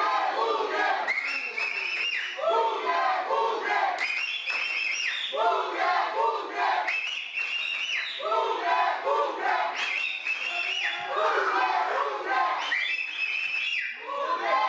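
A group of voices chanting, the same short phrase repeated over and over about every one and a half seconds: football supporters' chant.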